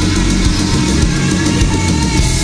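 Live recording of a glam metal band playing: electric guitars over a drum kit, with steady drum strokes and no vocals.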